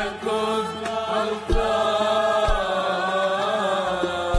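A man singing an Arabic worship hymn with band accompaniment, holding one long, wavering note through the second half, with a few drum hits underneath.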